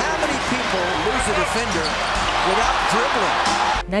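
Basketball being dribbled on a hardwood court over steady arena crowd noise, with a thump every half second or so. The sound cuts off sharply near the end.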